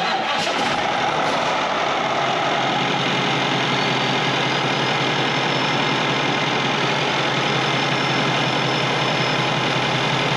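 Cummins diesel engine in a motorhome's open rear engine bay idling steadily, soon after a cold start.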